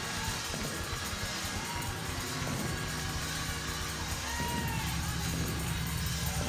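Church music with held low bass or organ notes playing under the voices and shouts of a standing congregation.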